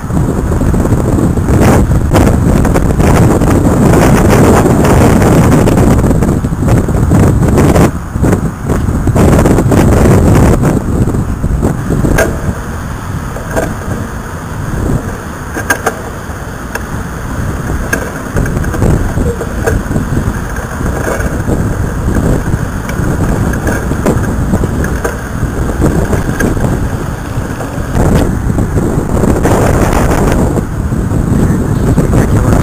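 Strong wind buffeting the microphone in a loud, rumbling roar, louder for the first twelve seconds or so and then easing somewhat. Road traffic and surf are mixed in under it.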